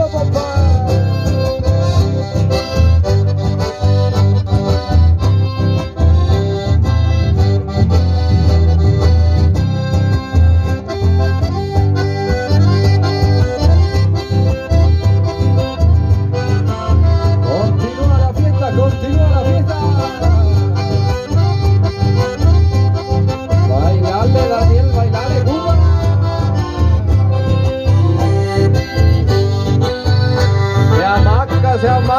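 Live Latin American folk music played loud and steady through a PA: a button accordion leads over a strummed acoustic guitar and a strong bass.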